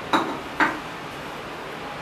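Wooden spatula knocking twice against the side of a metal cooking pan while stirring: two sharp knocks about half a second apart, the first with a faint metallic ring.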